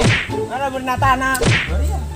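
Slapstick whip-crack sound effect, each a fast falling swish, heard twice: at the start and about a second and a half in. Between them comes a wavering pitched sound.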